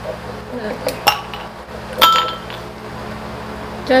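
Two sharp clinks of a stemmed wine glass holding ice being handled on the table, about one and two seconds in, the second leaving a short ringing tone.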